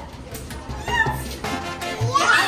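Upbeat salsa-style background music, with a short high squeal about a second in.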